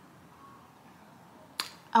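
Quiet room tone, then a single sharp lip smack near the end as a woman parts her freshly glossed lips, just before she starts to speak.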